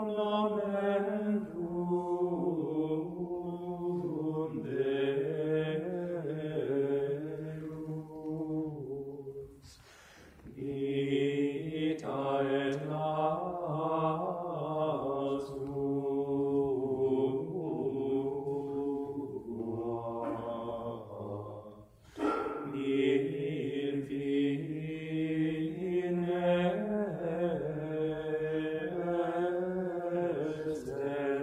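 Latin chant of the Tridentine Mass, sung in long, flowing phrases with two brief breathing pauses, about ten and twenty-two seconds in.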